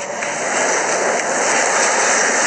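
Steady road and engine noise inside a moving vehicle's cab, an even rushing noise with no breaks.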